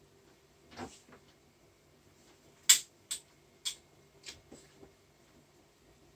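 A handful of sharp clicks and knocks from things being handled in a kitchen, the loudest about three seconds in, then smaller ones, over a faint steady hum.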